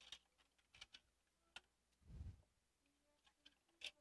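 Faint scattered clicks and taps of a graphics card and its fan cooler being handled on a workbench, with a soft low thump about two seconds in.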